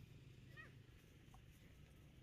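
Near silence, with one faint short animal call falling in pitch about half a second in.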